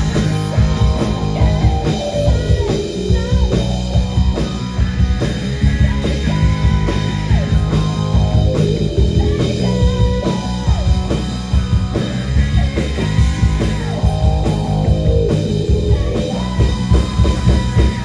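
Live rock band playing loudly: electric guitar, bass and drum kit, with a woman singing into a microphone.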